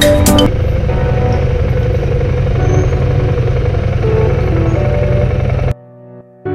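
Background music stops about half a second in, giving way to a motorcycle engine running as a steady low rumble. The rumble cuts off suddenly near the end.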